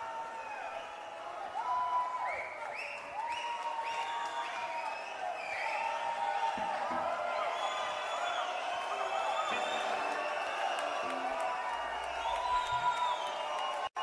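Concert crowd cheering and calling for an encore, with many whistles and whoops rising and falling over a steady roar.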